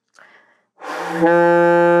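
Alto saxophone playing one held low D with the octave key unpressed, blown with low-register breath energy. The note starts airy and breathy a little under a second in, firms into a clear steady tone, and stops right at the end.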